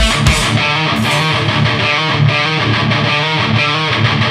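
Metallic hardcore recording: a distorted electric guitar riff played over bass, with a couple of sharp hits near the start.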